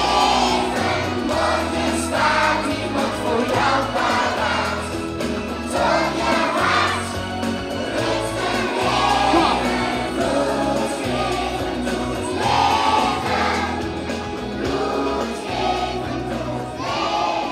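A group singing a song together over a backing track with a bass line.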